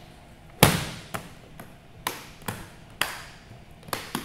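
A series of sharp knocks, about six in four seconds at uneven spacing. The first, about half a second in, is the loudest, and each dies away quickly.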